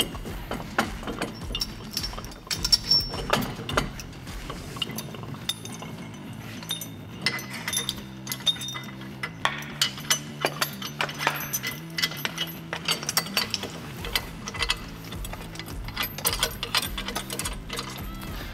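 Irregular metallic clinks and knocks of canopy-leg hardware and clamps being handled and fitted, over low background music.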